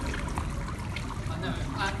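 Indistinct voices of people talking over a steady low rumble, with a man's voice starting near the end.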